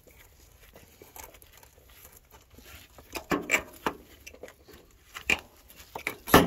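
Gloved hands working a new rubber cab air bag into its upper mount: rubbing and crinkling handling noise, with a few short sharp clicks and knocks in the second half.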